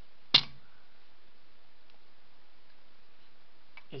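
A single sharp click about a third of a second in as the EV main contactor's housing is handled and turned over, then only a steady faint hiss.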